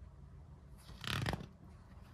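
A page of a hardcover picture book turned by hand: one short papery swish about a second in.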